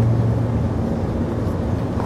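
A steady low mechanical hum drones without change.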